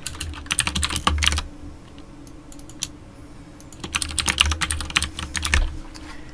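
Computer keyboard being typed on in two quick bursts of keystrokes, one at the start and one about four seconds in, over a faint steady low hum.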